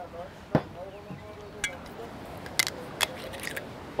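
Sharp click about half a second in, then a few lighter clicks and taps: bottles being handled at the grill between pours into a cast-iron Dutch oven.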